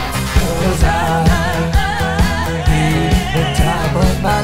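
Pop dance music from a band with female vocals: a steady kick-drum beat about two a second, with a sung line that comes in about a second in.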